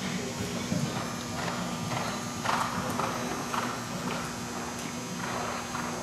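Thoroughbred's hoofbeats on soft indoor arena footing: a heavier thud as the horse lands from a fence about a second in, then an even run of cantering hoof strikes about two a second.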